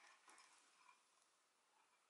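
Near silence: room tone.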